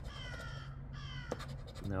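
A bird calling twice, a longer call then a shorter one, each harsh and slightly falling in pitch.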